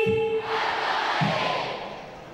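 A shouted cheer held on one pitch through a PA microphone, which breaks off about half a second in. A crowd's answering shout follows and fades away over the next second.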